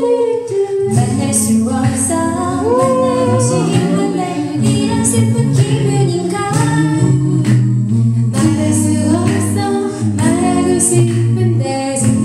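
Mixed five-voice a cappella group singing through handheld microphones. Sustained low harmony notes sit under a lead melody sung with vibrato, with no instruments.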